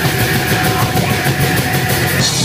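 Loud heavy rock music driven by a drum kit, with fast, even cymbal strikes.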